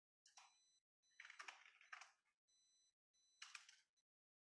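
Faint typing on a computer keyboard, in a few short bursts of key clicks with silence between them.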